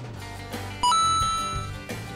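Background music with a bright bell-like ding sound effect about a second in, ringing and fading over about a second.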